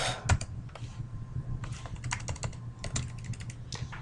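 Typing on a computer keyboard: a run of irregular key clicks, with a low steady hum beneath.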